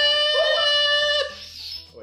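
A woman's voice holding one long, high "ohhh" cheer as the shot is downed. It breaks off a little over a second in and fades to quiet.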